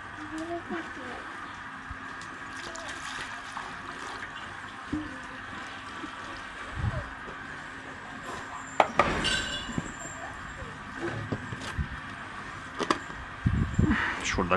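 Milk being strained through a cloth and poured into a milk can, a light liquid sound with handling of the can and strainer. A sharp metallic clink rings out about nine seconds in, and there are a few knocks near the end.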